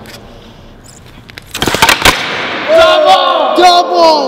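Carbon-fibre frame skateboard popped and landing on a concrete floor: a quick clatter of several knocks about a second and a half in. Excited yelling from several people follows.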